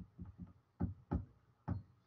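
Irregular light clicks from someone working a computer's controls, about seven in two seconds, with short gaps between them.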